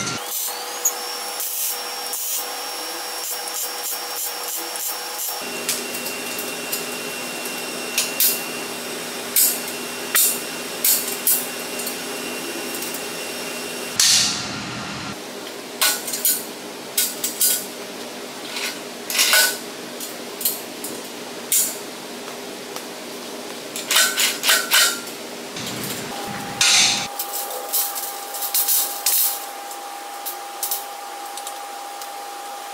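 Metalwork on a steel square-tube frame: irregular sharp metallic knocks and clanks, some in quick clusters, over a steady background tone that shifts abruptly several times. A louder, longer burst comes about halfway through.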